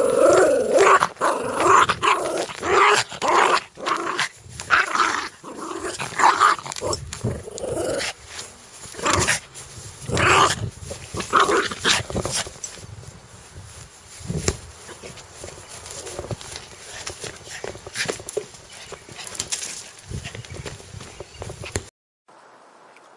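A small dog growling in repeated bursts, loudest over the first eight seconds or so, then quieter and more scattered.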